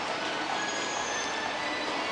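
Steady background noise inside a shopping-centre atrium: a continuous hiss with faint high tones drifting through it.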